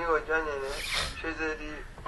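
A man speaking in a lecture over a video call. A short hiss cuts in near the middle.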